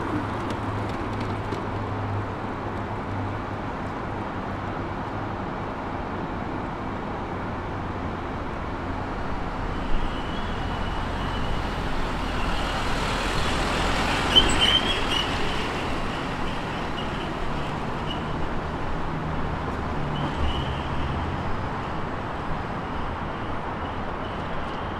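City street traffic: a steady hum of engines and road noise, swelling louder about halfway through as a vehicle passes, with a couple of sharp ticks in that louder stretch.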